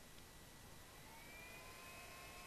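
Caseless desktop PC powering up: a faint whine that rises about a second in, then holds steady as its fans and drives spin up. This is a sign that the machine has started.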